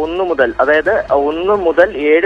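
A man speaking Malayalam over a telephone line, the voice thin and narrow-sounding.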